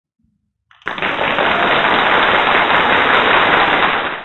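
A loud, steady hiss-like noise from an intro sound effect, starting abruptly about a second in and holding even throughout.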